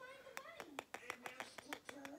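Fingers and fingernails tapping and clicking against a small wooden block sign as it is handled, a dozen or so light, irregular ticks. A faint wavering voice sounds underneath.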